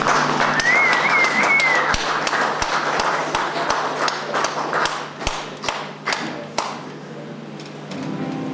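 Small audience applauding after an acoustic song, with a short wavering whistle near the start; the clapping thins to a few scattered claps and stops about two-thirds of the way through.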